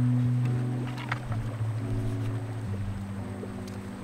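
Background music: sustained low notes, with a new chord coming in sharply at the start and the notes shifting twice more.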